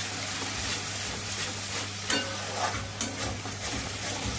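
Spice paste frying in oil in a steel kadai: a steady sizzle, with the steel spatula scraping and stirring against the pan every second or so.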